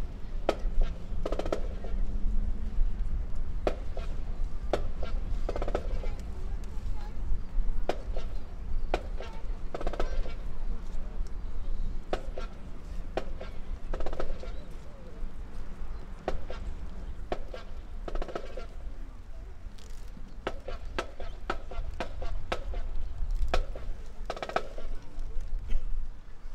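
Open-air stadium ambience under a steady low rumble: scattered distant voices in short snatches every few seconds, and sharp clicks and knocks dotted throughout.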